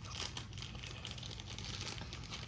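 Light crinkling and rustling of cardboard and packaging as an advent calendar is handled, with scattered small clicks.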